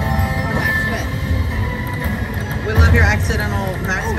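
Slot machine's win-celebration music and chimes as the win meter counts up, over casino background noise, with a person's voice about three seconds in.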